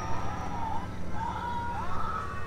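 Gas pump dispensing fuel through the nozzle into a pickup truck's tank: a steady low hum, with faint voice-like fragments over it.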